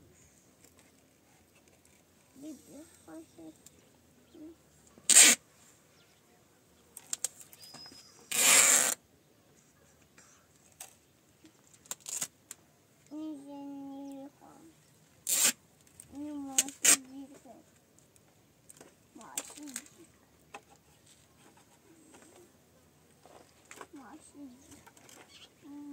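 Clear adhesive tape pulled off its roll in short, loud rasps, about six times, with one longer pull about eight seconds in. Soft voices murmur between the pulls.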